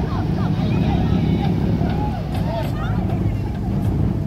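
Steady low rumble of a motor yacht under way, with people talking over it.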